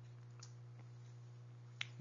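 Quiet recording room tone with a steady low electrical hum, a couple of faint ticks, and one short sharp click near the end.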